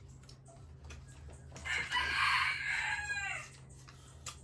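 A rooster crowing once, starting about a second and a half in: a harsh call of nearly two seconds that trails off falling in pitch.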